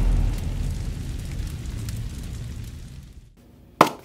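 The deep rumbling tail of a cinematic boom sound effect in a logo intro, fading away over about three seconds. A single sharp click comes just before the end.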